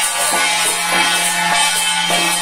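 Ritual dance music: frame drums and cymbals beating a steady rhythm over a held low tone.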